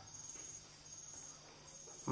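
Faint high-pitched insect chirring that pulses steadily, over a low hum.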